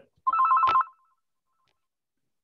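A brief electronic ring, two pitches trilling rapidly for about half a second just after the start, with a click near its end.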